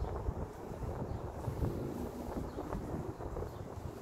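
Wind buffeting the microphone: a gusty, uneven low rumble.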